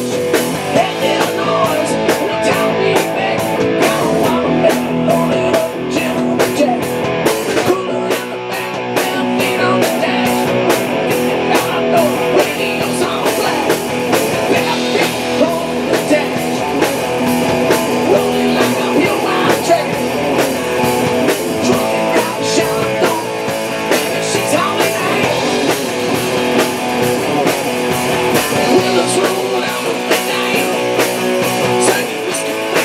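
Live rock band playing an instrumental passage: electric guitars, bass and a drum kit, with the guitar to the fore.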